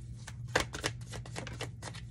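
Tarot cards handled and shuffled by hand: a quick, irregular run of sharp card clicks and slaps, with a card drawn and laid down on the table.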